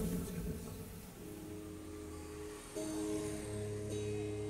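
Amplified guitar playing softly: the previous loud passage dies away, then a few held notes are picked from about three seconds in, with a low note joining shortly after.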